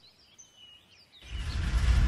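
Faint bird chirps over near silence. About a second in, a deep rumble starts and swells steadily louder.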